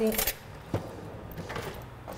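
A word trails off, then quiet kitchen handling with a single light knock of kitchenware about three quarters of a second in.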